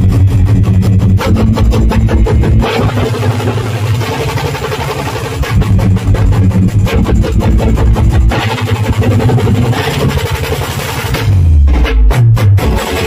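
Adivasi timli band playing live: a corps of snare drums and bass drums beats a fast, dense rhythm over steady deep bass notes and an amplified string-like melody. The drumming thins out briefly in the middle and comes back, and a deep falling bass sweep comes just before the end.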